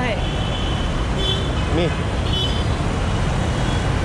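Busy street traffic running steadily, with two short high horn toots, one just over a second in and another past the middle.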